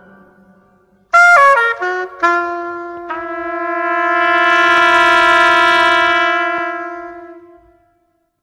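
Jazz film-score music: a solo wind instrument plays a short falling run of notes, then holds one long note that swells and fades away to end the cue.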